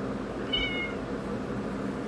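A cat gives one short, high meow about half a second in.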